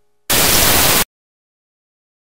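A loud burst of static-like hiss that starts suddenly and cuts off abruptly after under a second.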